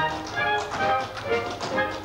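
Live pit band playing a lively show tune, with brisk taps from dancers' feet on the stage boards.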